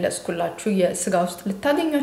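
Only speech: a woman talking in Amharic.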